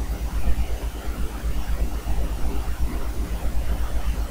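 Steady low rumble with a faint hiss underneath: the recording's background noise, with no distinct event.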